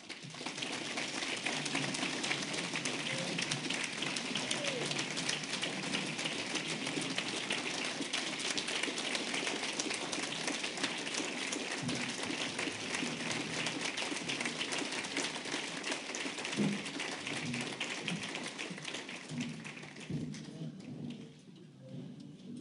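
Audience clapping in a standing ovation: sustained, dense applause that dies away near the end.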